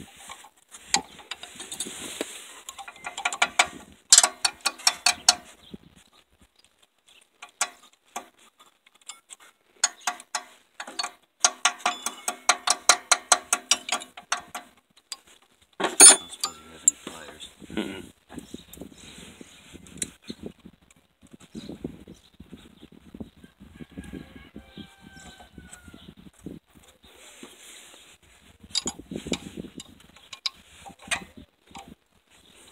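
Ratcheting wrench clicking in runs of quick, even clicks, about seven a second, as rusty nuts on an electric golf cart motor are worked loose, with one sharp metal clank about sixteen seconds in.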